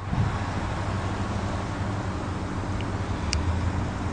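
Steady low rumble of vehicle and traffic noise with an even hiss over it, beginning suddenly.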